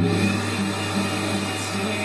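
Acoustic guitar strummed in a steady rhythm, with a loud steady rushing noise and low hum, like a small motor, that cuts in suddenly at the start.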